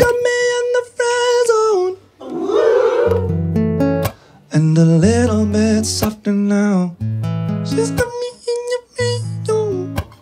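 Acoustic guitar strummed in chords with a man singing a melody over it, the chords changing about every second or two.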